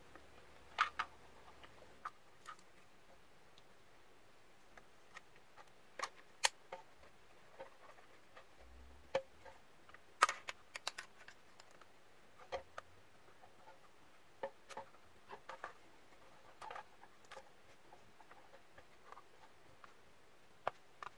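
Scattered light clicks and taps of plastic as the router's housing and its strip antennas and cable are handled and fitted in place, a few sharper clicks among them.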